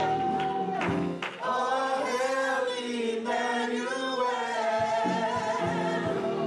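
Several voices of a gospel praise team singing in harmony through microphones, holding long notes, with a light instrumental backing.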